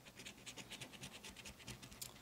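Faint, quick, repeated strokes of a coin scratching the latex coating off an Ohio Lottery scratch-off ticket.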